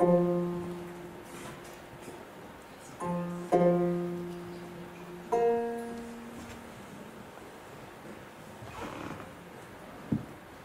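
Khakass khomys, a two-stringed plucked lute, played solo in slow, sparse strokes: a plucked chord at the start, two more about three seconds in, and a higher chord at about five seconds, each left to ring and die away.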